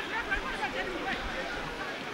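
Ground ambience at a football match: scattered distant shouts and chatter from spectators and players, with no commentary over it.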